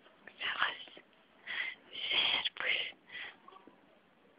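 A person whispering in a few short, breathy phrases, with brief pauses between them.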